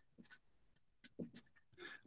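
Near silence with a few faint, short scratches of a felt-tip marker writing on paper.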